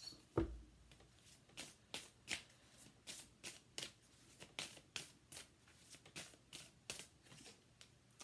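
A tarot deck being shuffled by hand: a steady run of soft card-on-card snaps, about two or three a second, with a stronger knock about half a second in.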